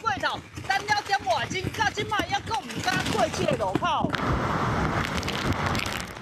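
A reporter's voice over rain and wind noise on a typhoon-lashed street. About four seconds in, it gives way abruptly to steady noise of typhoon wind and heavy surf breaking against a seawall.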